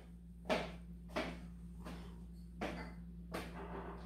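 Footsteps of an elderly woman walking away along a hallway: about six soft, evenly spaced steps, a little under a second apart, over a faint steady hum.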